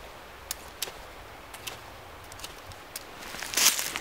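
A few faint, sharp clicks of handling, then near the end a short, harsh, hissing scrape: the 90-degree spine of a carbon-steel bushcraft knife drawn down a ferrocerium rod to throw sparks.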